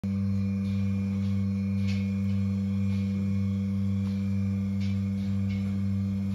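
Milking machine running: a steady, loud hum from the vacuum pump, with a faint hiss repeating about every half second or so as the pulsator cycles the teat cups.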